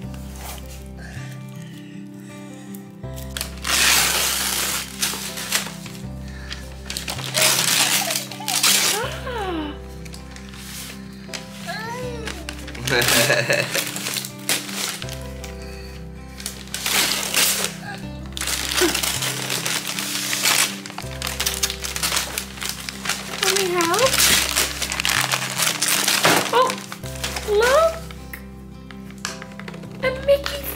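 Wrapping paper being torn and crumpled as a present is unwrapped, in repeated loud rips, over background music with a steady beat; a small child's short vocal sounds come in between the rips.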